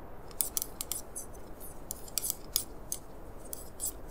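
A rapid, irregular run of short, crisp clicks, about fourteen in under four seconds, starting about a third of a second in, over a faint low steady rumble.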